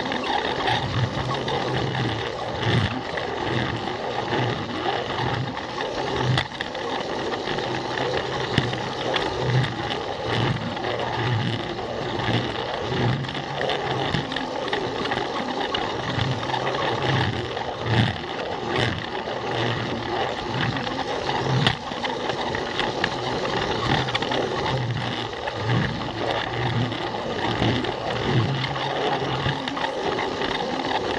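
A Plarail battery-powered toy train's small electric motor and gearbox running steadily as its plastic wheels roll along plastic track, heard up close from the camera riding on the train, with a low hum that comes and goes and occasional short clicks.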